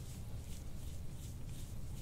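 Metal soft-tissue scraping tool drawn in short strokes over the skin of the neck and upper back, giving faint scratchy swishes over a low steady rumble.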